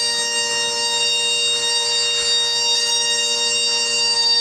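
Bagpipes playing, the drones sounding steadily beneath a long note held on the chanter.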